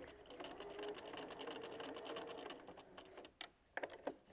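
Bernina sewing machine stitching a narrow basting seam at a fast, even stitch rate, faint, stopping about three-quarters of the way through, followed by a few separate clicks.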